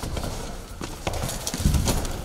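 Quick running footsteps on a hard floor, a fast irregular patter of steps that gets heavier near the end.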